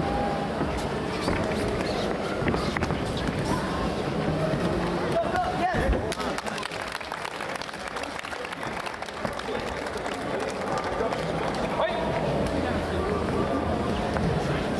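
Background voices echoing in a large sports hall, mixed with scattered thuds and knocks of gloved strikes and footwork on the ring canvas, one heavier thud about six seconds in.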